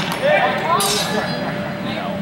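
Longsword blades clashing, metal on metal: a sharp clash right at the start and another about three-quarters of a second in, each leaving a brief high ringing, with voices calling out between them.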